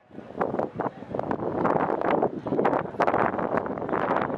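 Wind buffeting the microphone on an open football training pitch, with many short irregular knocks and taps running through it.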